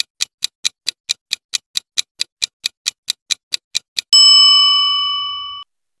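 Countdown timer sound effect: a clock ticking quickly and evenly, about four to five ticks a second, for about four seconds, then a bell ding that rings and fades for about a second and a half before cutting off, marking time up.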